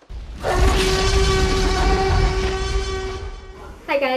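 One long, steady horn-like tone over a low rumble, lasting about three seconds and fading near the end: an edited-in sound effect.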